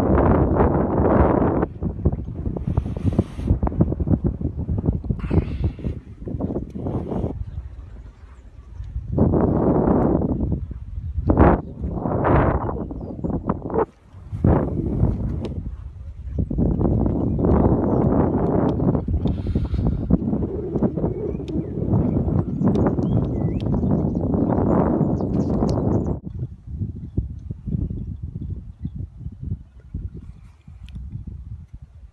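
Wind buffeting the microphone in gusts: a rumbling rush that swells and drops, with lulls about eight and fourteen seconds in, easing off near the end.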